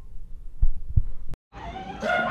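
Two dull, low thumps about a third of a second apart over a low background rumble, then the sound cuts out completely for a moment near the end.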